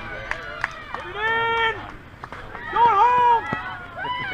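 Voices on a softball field giving two long shouted calls, one about a second in and a louder one around three seconds, each held on a steady pitch, while a batter runs out a hit. A few sharp clicks sound in the first second.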